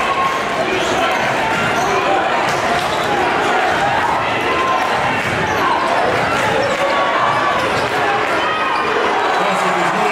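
A basketball being dribbled on a hardwood gym court, over a steady hubbub of many voices in a crowded gym.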